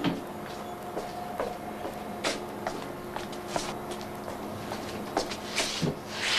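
Busy canteen background: scattered clinks and knocks of tableware and chairs over a steady low hum, with a brief noisy shuffle near the end.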